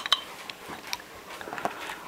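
A few faint, short clicks and taps in a quiet room, about three of them in two seconds, over a low hiss.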